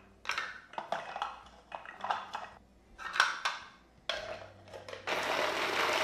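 Electric mini food chopper mincing garlic: irregular plastic knocks and clatter from handling the bowl and lid, then the motor starts with a low hum about four seconds in and turns into a loud, steady whirring chop near the end.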